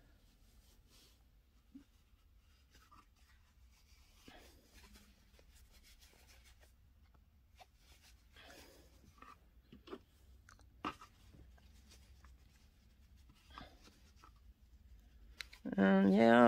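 Faint rustling and scratching as wisps of polyester fiberfill are torn apart and pushed into the legs of a small fabric stuffed animal, with a few short, sharper taps and clicks between the soft rubbing.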